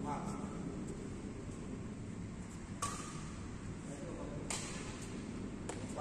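A few sharp taps and clicks over the low murmur of a large sports hall. The loudest comes about three seconds in and rings briefly; two lighter ones follow near the end.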